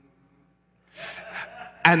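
A pause, then about a second in a man's short, breathy gasp close to the microphone; the first word of speech follows at the very end.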